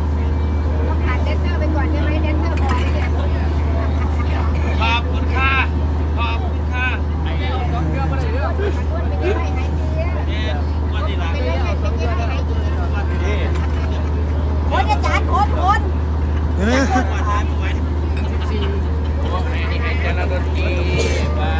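Large mobile diesel generator running steadily with a constant deep hum, with people's voices over it.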